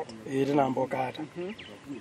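Speech only: a person talking quietly.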